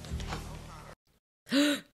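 A woman's short, sharp gasp with a voiced 'oh' about one and a half seconds in, after a brief dead silence. Before that, a steady low hum from a film soundtrack with faint dialogue.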